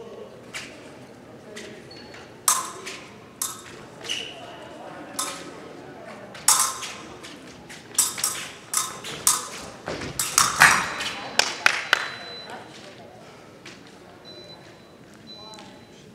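Épée blades clashing: a run of sharp metallic clinks and pings mixed with thuds of footwork on the piste, scattered at first and coming thick and fast late in the exchange, just before a touch is scored.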